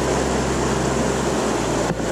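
River water rushing steadily around a wading angler.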